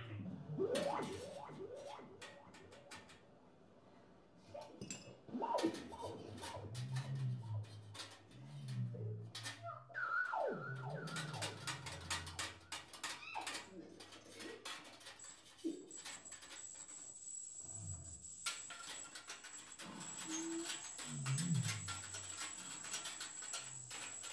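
Free-improvised music for tuba, voice and percussion/electronics: low tuba notes and smears, gliding pitched sounds, and scattered clicks and rattles. A little past halfway a steady high electronic tone comes in and holds.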